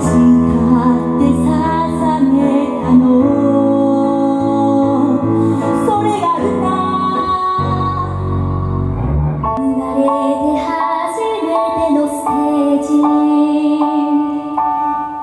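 Two young female singers performing a Japanese pop ballad in Japanese, accompanied by guitar. A little past halfway the voices pause briefly under a low held note, then the singing picks up again.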